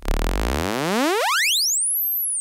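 Teenage Engineering Pocket Operator, played through an arcade-button case, sounding a synthesized tone that glides steadily upward in pitch from low to very high over about two seconds.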